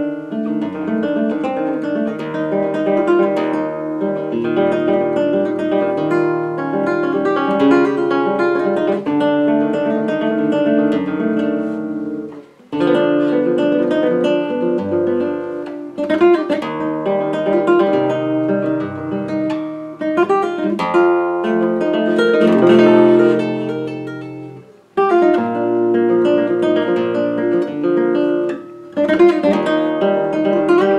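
Solo flamenco guitar playing a rondeña in arpeggios, in the rondeña scordatura: sixth string tuned down a tone, third string down a semitone, capo at the first fret. The playing breaks off briefly about 12 seconds in and again about 25 seconds in.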